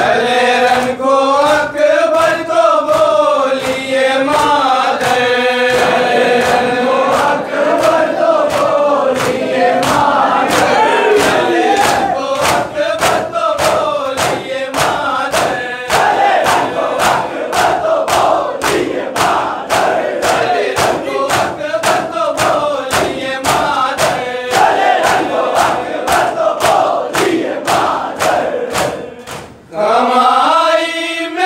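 Men's group chanting of an Urdu nauha (Shia lament), a lead reciter and chorus in unison, over the crowd's matam: hands striking chests in a steady beat about twice a second. The chanting drops away briefly near the end while the beating carries on.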